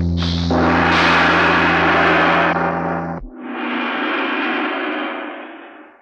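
Film soundtrack effect: a deep, sustained gong-like ringing with a loud crash of noise over it from about half a second in, both cutting off about three seconds in. A softer rushing sound follows and fades away near the end.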